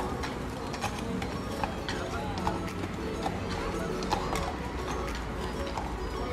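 Hooves of a horse pulling a carriage, clip-clopping at a walk on an asphalt street.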